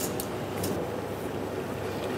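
Pot of salted water at a rapid boil, a steady bubbling noise, with a couple of faint ticks in the first second.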